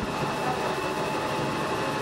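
Steady, even background noise with a faint constant high-pitched tone and no distinct events.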